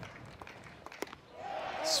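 A mid-90s fastball popping into the catcher's mitt on a swing and miss: one sharp pop about a second in, over low ballpark crowd noise.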